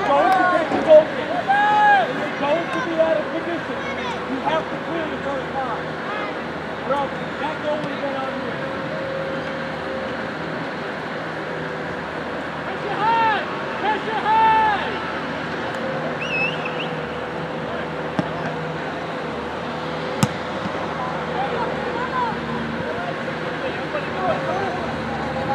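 Distant shouting voices of soccer players and sideline spectators on an open field, loudest in bursts near the start and again about halfway through, over a steady faint hum. A single sharp click comes late on.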